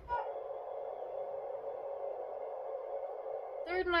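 A steady, even mid-pitched hum that starts abruptly just after the start and cuts off near the end.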